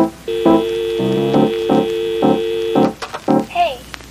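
Background music: a run of short pitched keyboard-like notes, about two a second, over a long held tone that stops about three seconds in.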